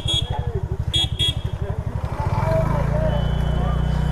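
TVS Ntorq 125 scooter's single-cylinder engine running at near-idle with a rapid, even pulse while the scooter creeps along at walking pace, then smoothing into a steady hum a little past halfway as the throttle opens. Two short high-pitched beeps about a second apart near the start.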